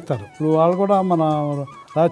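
A man's voice drawing out one long vowel at a steady pitch for over a second, between stretches of speech.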